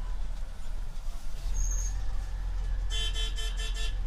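Inside an Orion VII CNG city bus: the engine's low, steady rumble, with a rapid pulsing beep lasting about a second near the end.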